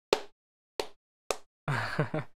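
A run of short, sharp pops, each fading quickly, about every two-thirds of a second, then a man's short laugh near the end.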